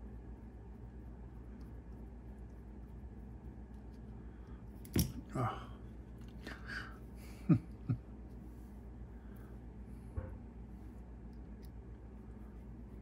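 Steady low hum of a quiet workroom, broken about halfway through by a few short sounds: a sharp click, brief wordless vocal noises, and a couple of low thumps, with a faint tap near the end.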